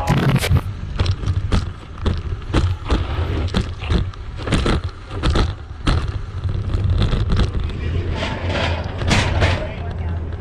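Bike rattling and knocking as it jolts over a rough dirt trail, picked up by a camera mounted on the handlebars, with irregular sharp knocks several times a second over a steady low rumble.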